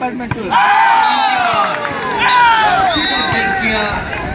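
A loud shouting voice over crowd babble: two long, high calls, each falling in pitch.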